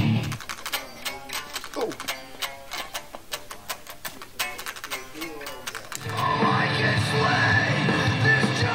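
Heavy rock music. A quieter stretch of quick, sharp clicking notes gives way to the full band playing loud again about six seconds in.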